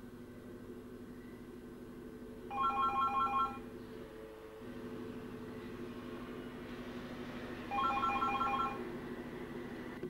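A corded desk telephone ringing with an electronic trill. Two rings of about a second each, some five seconds apart, over a steady low hum.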